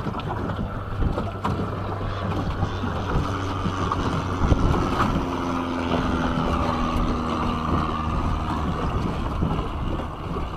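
Small boat's outboard motor running steadily under way, with wind buffeting the microphone. A light plane's engine drone joins in overhead for a few seconds in the middle.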